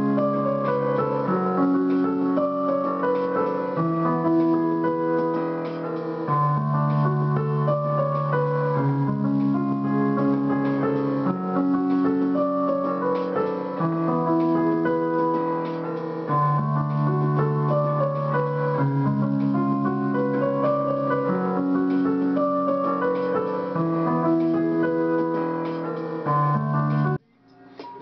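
Electronic keyboard played with a piano sound: low held chords that change every two seconds or so, with a higher melodic line over them. It cuts off abruptly near the end.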